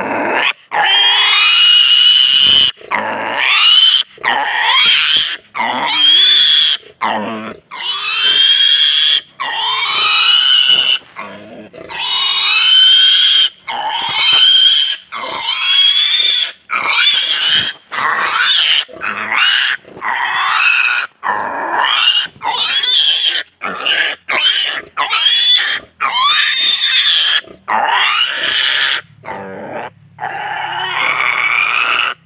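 A pig squealing over and over: loud, high squeals about one a second, each breaking off sharply before the next.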